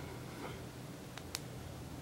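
Quiet room tone, a faint steady hiss, with two faint ticks close together a little over a second in.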